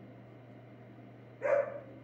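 A single short dog bark about one and a half seconds in, over a faint steady low hum.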